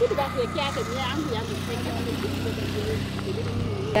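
A motor engine idling steadily, a low even hum, with people talking in the background during the first second or so.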